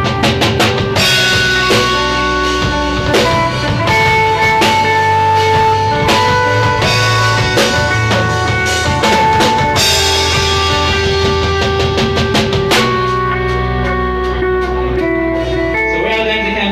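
Live rock band playing: electric guitars and bass over a drum kit, with held lead notes over the chords. In the last few seconds the drum hits thin out and the held notes ring on.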